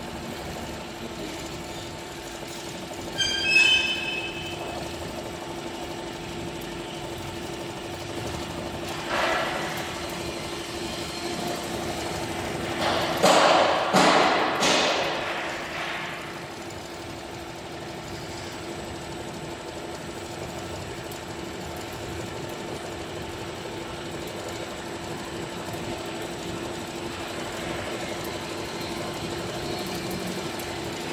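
Richpeace single-head cap embroidery machine running and stitching a cap, with a steady hum throughout. A short ringing clink comes a few seconds in, and a louder noisy clatter lasts a couple of seconds about halfway through.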